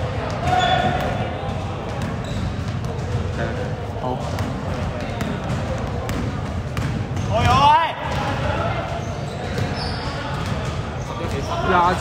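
Basketball bouncing on a wooden-floored indoor court in a large sports hall, with repeated knocks of dribbling and players' voices calling out, one short call about seven and a half seconds in.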